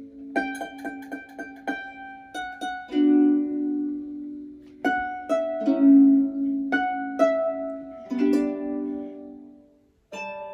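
Solo harp played by hand: a quick run of plucked notes in the first two seconds, then slower chords and single notes left to ring and decay. The last chord dies away near the end.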